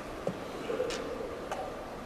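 Three light clicks and knocks spread over about a second and a half: a wooden chess piece set down on the board and the button of the chess clock pressed.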